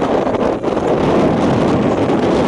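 Steady, loud rushing noise of wind blowing on the microphone.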